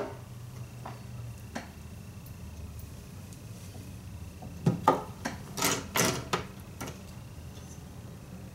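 A few light clicks and knocks from hairstyling tools being handled: one about a second in, another soon after, and a quick cluster of them about five to six seconds in. A low steady hum runs underneath.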